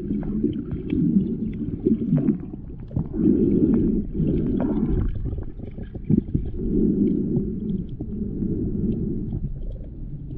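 Muffled underwater rumble and sloshing of moving water, heard by a camera submerged in a shallow tide pool. It comes in swells about a second long, with scattered small clicks and ticks.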